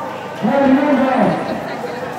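A man's voice calling out in one long, drawn-out note lasting about a second, its pitch rising and then falling away.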